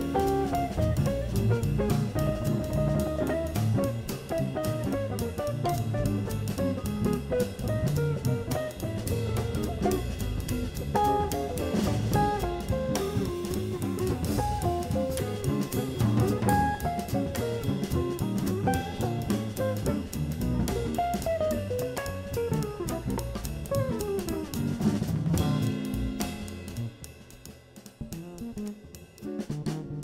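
Small jazz combo playing a B-flat blues: electric archtop guitar soloing in quick single-note lines over electric bass and drum kit. About 25 seconds in, the lines give way to chords and the band drops much quieter.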